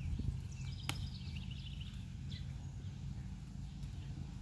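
Outdoor background noise: a steady low rumble of wind on the microphone, with one sharp click about a second in and faint high chirps in the first half.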